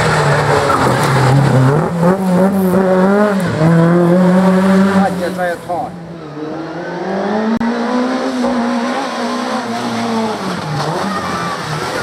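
A Fiat Ritmo race car's four-cylinder engine revving hard through tight bends, its note rising and falling with throttle and gear changes. The sound drops away briefly about six seconds in, then the engine note climbs steadily again.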